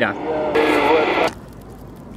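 Amateur HF transceiver's speaker on 160 m AM: noisy radio audio with a faint voice-like tone in it, then, about halfway through, a drop to the quieter steady hiss of the band.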